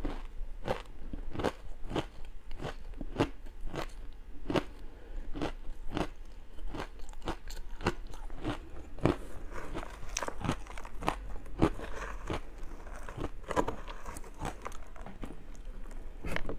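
Matcha-powdered ice crunching as it is bitten and chewed: a steady run of crisp crunches, about two a second.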